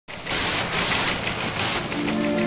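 Static-noise glitch sound effect: a continuous harsh hiss that flares brighter three times in short surges.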